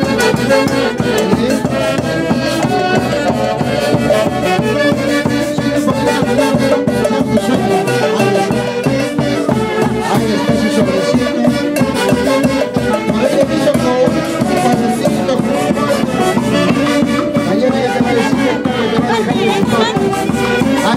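Live band led by saxophones playing folk dance music with a steady beat.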